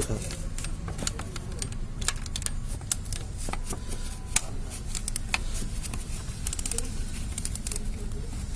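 Scattered metallic clicks and taps from a socket wrench and extension working at the engine's timing sprocket, with a quick run of clicks near the end, over a steady low hum.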